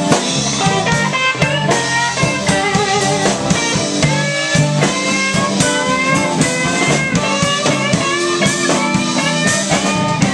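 Live blues band in an instrumental break of a slow blues, with electric guitar playing lead lines with bent notes over electric bass, drum kit and mandolin.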